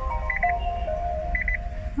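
Nissan Leaf's power-on chime as the car is switched on: a short electronic tune of held notes, with a quick triple beep repeating about once a second.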